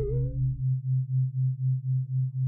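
Low electronic tone from the film's soundtrack, pulsing evenly about four times a second. A wavering higher tone glides and fades out in the first half second.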